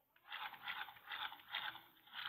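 Rustling and scraping handling noise: a run of short scratchy bursts, about two to three a second, as the handheld camera is moved about.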